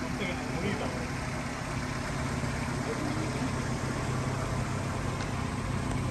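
1949 Austin A40's 1.2-litre four-cylinder pushrod engine idling with a steady low hum.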